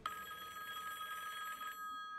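An electronic telephone-like ringing tone: a fast trill over a few steady high pitches. The trill stops shortly before the end, leaving the steady pitches held.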